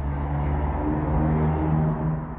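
A motor vehicle's engine running nearby: a steady low hum that swells slightly and eases off near the end.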